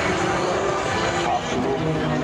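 Pratt & Whitney Canada PT6A turboprop engines of a formation of Pilatus PC-9 trainers running, a steady engine drone, with speech over it.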